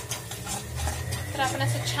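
Metal spatula stirring and scraping thick masala gravy around a metal kadai in repeated short strokes.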